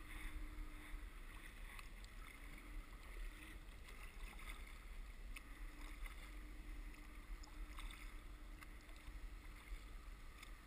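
Kayak paddling on calm water, heard faintly and muffled through a GoPro's waterproof housing: scattered small paddle drips and splashes over a low steady rumble, with a faint hum that comes and goes.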